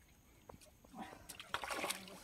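A hooked rohu splashing at the water's surface as it is played on a rod and line. The splashing starts about a second in and is loudest in the last half second.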